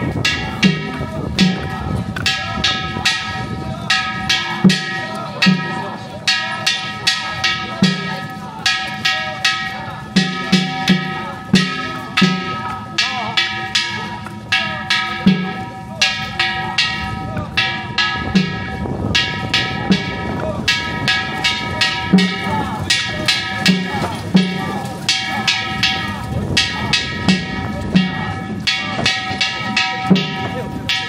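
Danjiri festival music from the float: a metal gong struck rapidly, about three or four ringing strikes a second, with a festival drum beaten in between.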